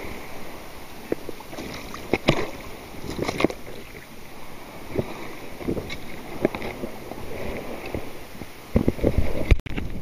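Water sloshing and splashing as someone wades and works in shallow bay water, with scattered small clicks and knocks throughout. A few louder handling thumps come near the end, followed by a brief cut-out.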